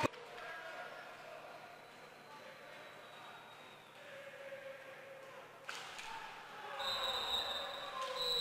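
Quiet roller hockey arena with a low crowd murmur while a penalty is taken. A single sharp crack comes a little over halfway through as the stick strikes the ball. Then the crowd noise rises, with a steady high whistle-like tone near the end.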